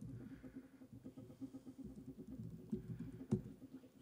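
Laptop keyboard keys tapping faintly as a command is typed, over a low steady hum, with one sharper, louder knock a little over three seconds in.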